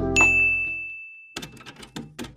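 A single bright chime 'ding' sound effect, struck just after the start and ringing on one high, steady tone for about a second while the background music fades away. In the second half comes a quick run of sharp clicks.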